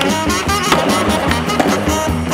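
Skateboard landing a trick: a sharp clack of the board hitting concrete about two-thirds of a second in, then the wheels rolling, under swing music with brass.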